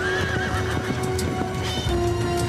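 A horse whinnies briefly at the start, with scattered hoofbeats, over dramatic film music with steady held tones.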